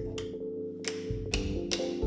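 Several sharp, unevenly spaced clicks of light switches being flicked on, over a steady background music bed.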